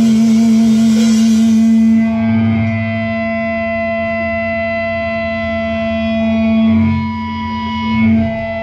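Electric guitar run through effects, holding one long sustained note with ringing overtones. A noisy high wash over it for the first two seconds cuts away, leaving the note hanging alone.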